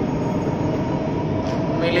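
Steady rumbling background noise with a faint steady hum through a pause in a man's talk. His voice comes back near the end.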